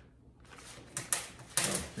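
A few light clicks and handling noises from small screws and hardware being picked over on a metal workbench.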